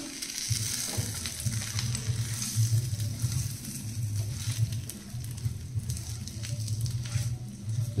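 Besan-stuffed green chillies sizzling in mustard oil in a nonstick frying pan, stirred and turned with a metal spatula that clicks and scrapes against the pan. A low steady hum runs underneath from about half a second in.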